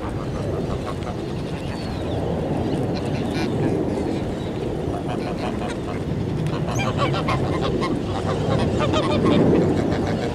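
Flock of domestic geese honking, many short repeated calls overlapping, loudest near the end, over a steady low background noise.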